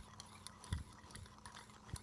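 Hand pepper mill grinding peppercorns as it is twisted: faint, uneven clicking.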